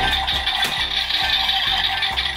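Electronic sound effect from a Power Rangers Ninja Force toy shuriken weapon: a steady, buzzy sound that starts suddenly and stops just before the end.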